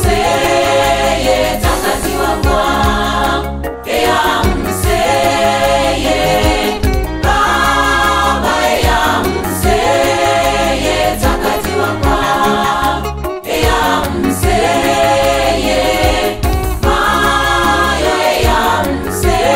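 Gospel choir song: women's voices singing phrases in harmony over a continuous instrumental backing with a strong bass line.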